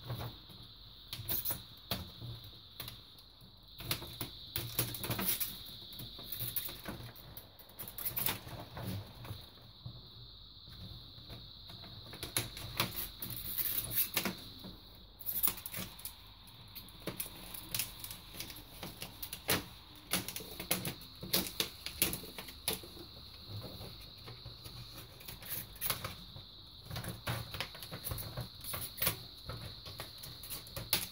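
Thin plastic reflector sheet being handled and pulled out of an LED TV's backlight panel: irregular crinkles, clicks and taps of plastic throughout.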